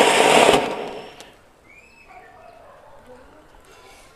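A flower pot (cone fountain) firework flaring up with a loud rushing hiss of sparks that fades away about a second in.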